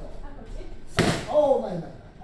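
A boxing-glove punch smacking into a focus mitt once, about a second in, followed at once by a short voice.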